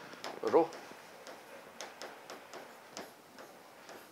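Chalk writing on a chalkboard: faint, irregular ticks and taps as the chalk strikes and drags across the board.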